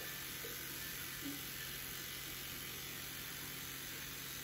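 Rotary electric shaver running steadily with a low buzz while pressed against a man's beard.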